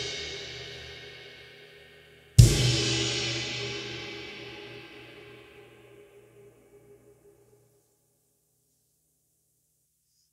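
A crash cymbal struck together with the Gretsch kick drum, once about two and a half seconds in, ringing out and dying away over about five seconds. The ring of an earlier crash-and-kick hit is still fading at the start.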